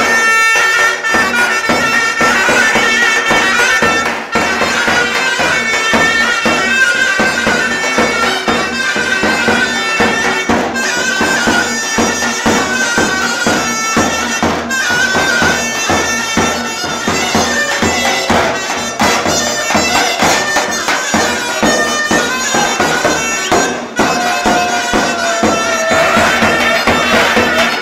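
Live Turkish davul and zurna playing a folk dance tune: the zurna's loud, shrill reed melody over the steady beat of the big double-headed davul drum.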